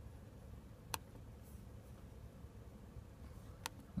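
Quiet room tone with two single sharp clicks, one about a second in and one near the end: a computer mouse being clicked to open the Start button's right-click menu.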